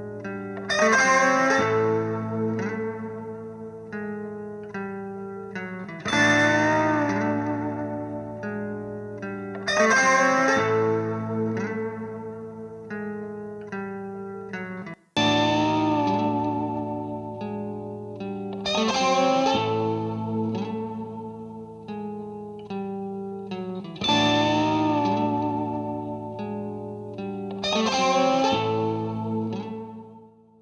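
Electric guitar amplifier, close-miked, playing a repeated passage of struck chords and ringing single notes with reverb. The passage plays twice with an abrupt cut about halfway: first through the Samsystems Integral speaker-mounted microphone with its EQ set to resemble an SM57, then through a Shure SM57, for comparison.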